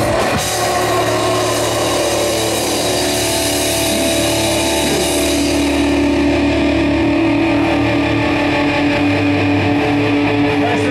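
Heavy metal band playing live: distorted electric guitars and bass holding a sustained, ringing chord under a wash of crashing cymbals. The cymbals die away about six seconds in while the guitar and bass chord rings on.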